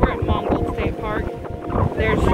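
Wind buffeting a phone microphone outdoors, a loud, uneven rumble, with voices speaking briefly over it.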